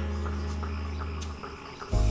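Crickets chirping as night ambience under a soft, sustained music chord that fades out about one and a half seconds in.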